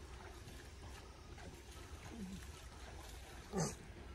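A young elephant gives one short, loud trumpeting squeal near the end, over a steady low rumble.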